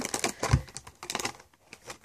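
Handling noise: a plastic toddler sippy cup set down with a low thump about half a second in, then a series of light clicks and taps as its card packaging is picked up.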